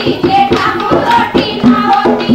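Music: a song with singing over a steady drum beat.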